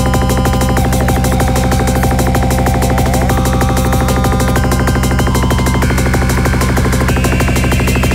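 Psychedelic trance music: a fast, steady electronic beat over a sustained bass, with synthesizer lines whose notes step higher near the end.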